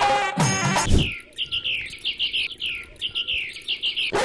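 A musical phrase ends with a low hit about a second in, then a bird chirps over and over in a fast run of short, falling notes.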